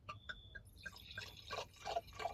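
Red wine being poured from a bottle into a stemmed wine glass: a faint, irregular run of small glugs and splashes that grows denser as the glass fills.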